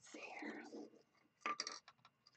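A person whispering for about a second, then a few light clicks about one and a half seconds in.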